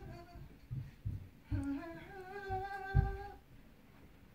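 A person humming a tune indoors, with a long held note in the second half, over a few dull low thumps, the loudest about three seconds in.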